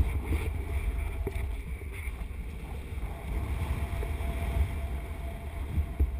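Airflow buffeting the microphone of a camera worn by a wingsuit pilot in flight: a steady, low rush of wind.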